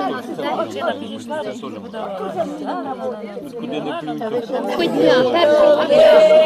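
Several people talking over one another. About five seconds in, voices begin to sing, holding a long note.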